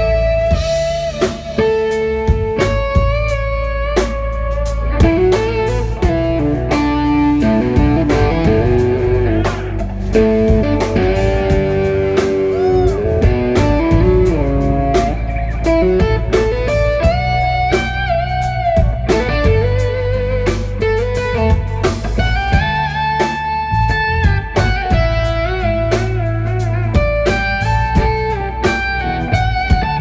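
Live instrumental rock: a lead electric guitar plays a melody with string bends and quick runs over bass and drums.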